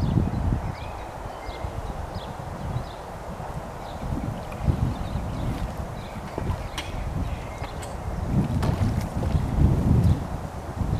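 Wind buffeting the microphone in uneven gusts, a low rumble that swells near the start, about four seconds in and most strongly near the end.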